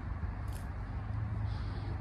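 Steady low outdoor background rumble at a moderate level, with one faint click about half a second in.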